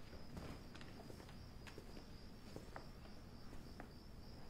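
Faint night ambience: insects such as crickets chirring steadily, with a scatter of light footsteps and soft clicks.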